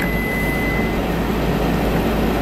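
Steady hum of a small running motor, with a faint high whistle that stops about halfway through.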